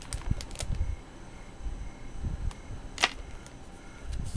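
Paper planner pages being handled and turned: soft rustling and low handling rumble with a few sharp clicks and taps, the sharpest about three seconds in.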